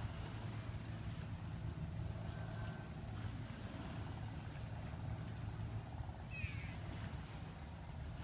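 Steady low outdoor rumble, with one short high animal call that falls in pitch about six and a half seconds in.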